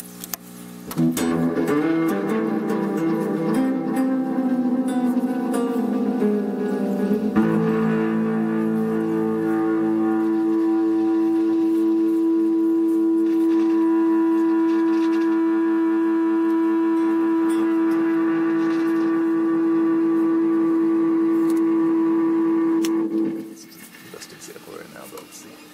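Electric guitar played through a Multivox Multi Echo tape delay unit. About a second in, dense overlapping notes sound, with repeats smearing together. From about seven seconds one tone is held steady for most of the rest, then cuts off suddenly near the end.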